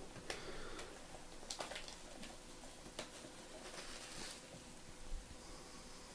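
Plastic shrink wrap being torn and peeled off a sealed box of trading cards: faint, scattered crinkles and crackles, with a slightly louder crackle about five seconds in.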